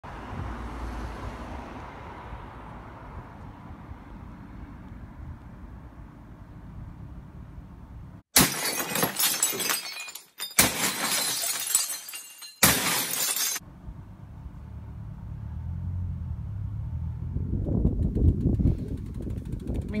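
Ceramic plates smashing: three loud bursts of crashing and shattering, each a second or two long, about eight to fourteen seconds in. A low rumble runs underneath before and after them.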